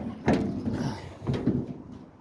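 The bonnet of a Morris Minor pickup being opened: a sharp click as the catch lets go, then a second or so of metal rubbing and clattering as the panel is lifted.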